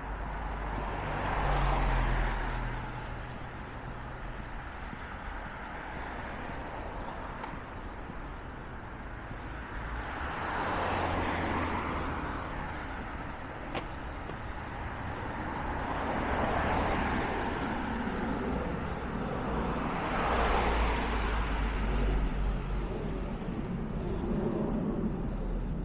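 Cars passing one after another on a city street, about four pass-bys, each rising and fading away, with tyre and engine noise over a low rumble.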